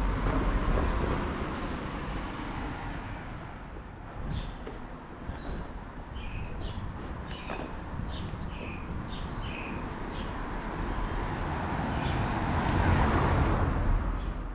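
Town street ambience: steady traffic rumble with short bird chirps in the middle, and a car passing close, swelling in level near the end.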